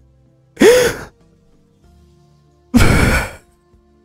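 Two heavy breathy sighs from a person, about two seconds apart; the first carries a brief voice that rises and falls in pitch. Faint steady background music runs underneath.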